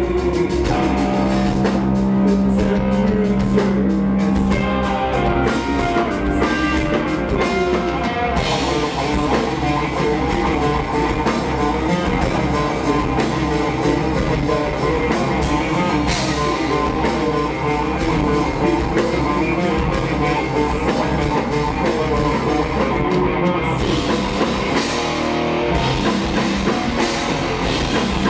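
Live rock band playing loud: electric guitar and bass guitar over a drum kit.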